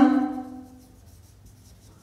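Marker pen writing on a whiteboard, faint, heard once the drawn-out end of a spoken word dies away in the first second.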